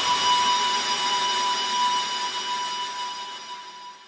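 A single held electronic tone ends the background music, with its level steady at first and then slowly fading out in the second half.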